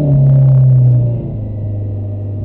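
Renault Clio rally car's engine held at raised revs on the start line during the countdown, easing back to a slightly lower, steady rev about a second in.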